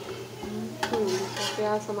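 Metal slotted turner scraping and clinking against an aluminium cooking pot while stirring sliced onions frying in oil, with a couple of sharp clinks.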